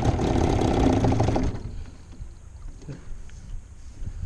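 Boat motor running steadily, then shut off abruptly about a second and a half in, leaving it quiet apart from a couple of faint knocks.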